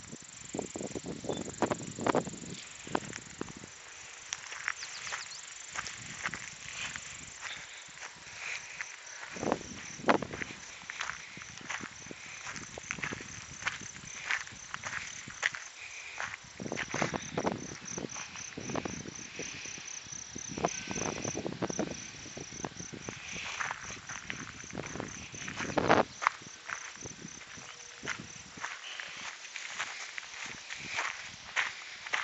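Footsteps and handling rustle from someone walking with a handheld camera on dirt and gravel: irregular crunches and knocks throughout. In the second half a rapid, high-pitched trill of even pulses runs alongside.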